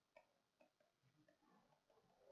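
Near silence with a few faint, irregular ticks: a stylus tapping on a tablet screen while words are handwritten.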